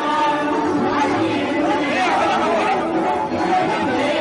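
A crowd of people talking at once: many overlapping voices in a steady babble, no single voice standing out.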